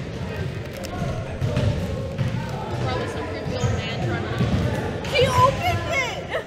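Basketballs bouncing on a wooden gym floor, a run of irregular dull thuds, with voices chattering in the background.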